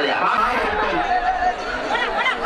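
Crowd of many voices shouting and chattering over one another, with one brief drawn-out shout about halfway through.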